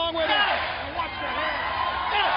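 Arena crowd shouting and cheering, many voices overlapping.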